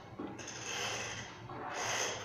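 Handling noise: something rubbing and scraping across the phone's microphone, in two swells of rasping noise, the second near the end.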